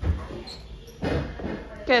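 A single dull, low thump at the start, followed by brief snatches of speech, with a voice starting near the end.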